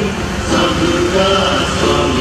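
Male voices singing a devotional chant in held, wavering notes, over the steady low hum of a vehicle engine.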